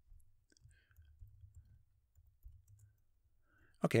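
A few faint, scattered computer keyboard keystrokes over a low steady hum.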